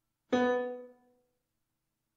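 One synthesized piano note played back by the Finale 2014 notation program as a note is entered. It sounds once, about a third of a second in, and dies away within about a second.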